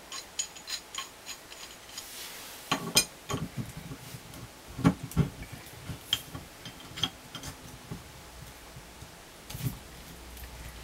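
Metal pipe wrench working a threaded cap off a steel gas pipe: scattered metallic clicks and clinks, the loudest about five seconds in.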